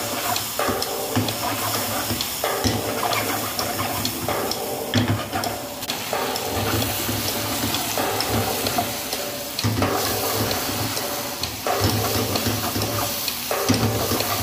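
Stir-fry sizzling in a wok over a high gas flame, a steady hiss as chicken and vegetables are tossed. Under it runs a repeating pattern of steady tones in short blocks.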